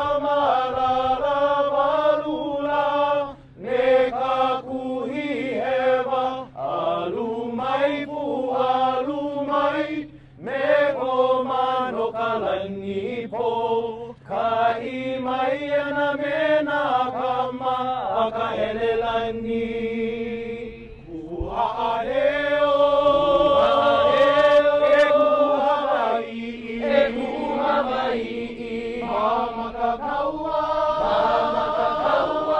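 A group of voices chanting a Hawaiian oli in unison, in phrases of held notes broken by short breaths. About two-thirds of the way through, the held notes waver in a pulsing vibrato.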